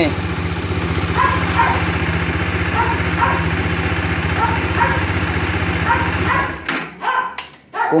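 Bajaj Dominar 400's single-cylinder engine idling steadily, running now that a loose battery terminal that was sparking has been tightened. The engine cuts off about six and a half seconds in, followed by a few clicks.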